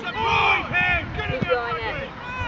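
Overlapping shouts from people at a youth rugby match, with one loud, high-pitched shout about half a second in.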